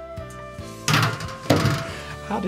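Soft background music runs steadily, broken by two loud, short thumps about a second in and half a second later.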